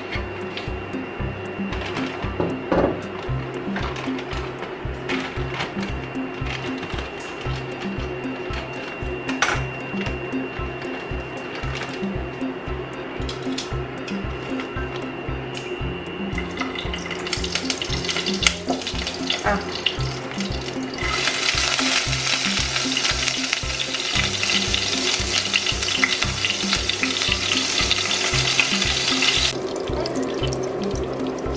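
Background music with a steady beat. Partway through, a hiss builds as Quorn meat-free balls go into hot olive oil in the pot, becoming a loud, even frying sizzle over the last third that cuts off suddenly just before the end.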